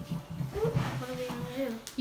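A child's voice talking quietly in a high, wavering pitch, with one short click near the end.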